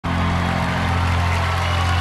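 Background music bed: a low sustained drone holding steady, with an even hiss of hall noise above it.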